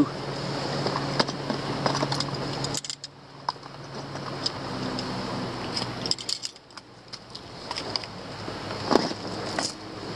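Fishing gear being rummaged through by hand in a bag, rustling, with scattered small clicks and knocks of plastic and metal items, over a steady background hiss.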